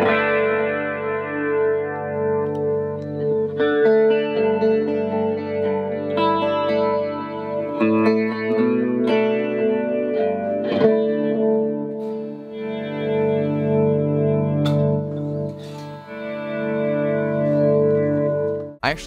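Electric guitar played through a Walrus Audio Mako D1 delay into a Julianna chorus/vibrato pedal and a JHS amp: chords strummed every second or two ring on in delay repeats with a wavering chorus shimmer. The delay sits before the modulation, so the repeats waver too.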